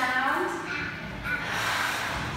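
Speech: a woman and a young child sounding out a letter, with a short rustle of paper flashcards being flipped near the end.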